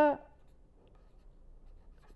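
Faint sound of a pen writing on paper.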